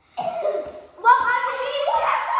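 Children's wordless shouts and yells: a short harsh, cough-like cry just after the start, then a longer pitched yell from about a second in.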